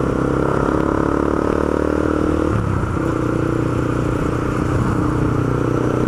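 Honda CB300's single-cylinder engine running steadily under way, heard from on the motorcycle. The engine note breaks off briefly about two and a half seconds in, then picks up again.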